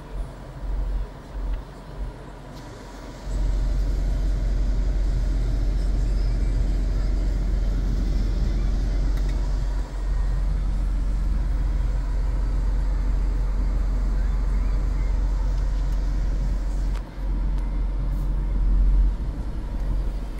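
2018 Mini Cooper D's three-cylinder diesel engine idling, heard from inside the cabin as a low rumble. The rumble is uneven for about three seconds, then holds steady, with a faint hiss over it until near the end.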